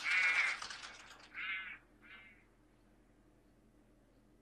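A crow cawing three times in the anime's soundtrack, each caw shorter and fainter than the last, dying away by about halfway through.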